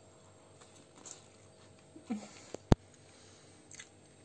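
Quiet chewing of a bite of lula kebab with raw onion rings, with a short closed-mouth hum about two seconds in. A single sharp click follows shortly after and is the loudest sound.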